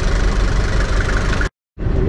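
VM four-cylinder turbodiesel engine of a classic Range Rover running steadily at idle after being brought to life on a borrowed battery. The sound cuts out abruptly for a split second near the end.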